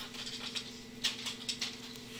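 A few faint clicks, starting about a second in, over a steady low hum.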